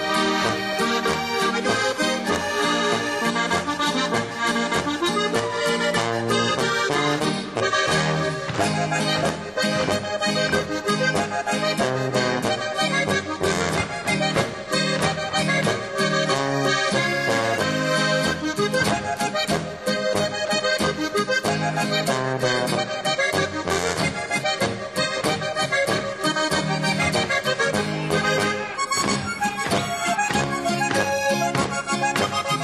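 Alpine folk band playing a Boarischer, a Bavarian folk dance tune: button accordions carry the melody over tuba bass and guitar, with a steady beat.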